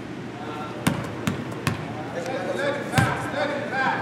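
A basketball bouncing on a hardwood gym floor: three quick bounces about a second in, then another about three seconds in.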